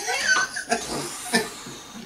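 People laughing in short, broken bursts, about three of them.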